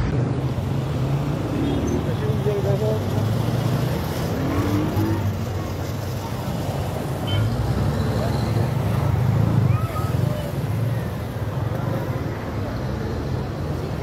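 Street noise on a phone recording: a steady low rumble of cars and engines, with indistinct voices calling in the background.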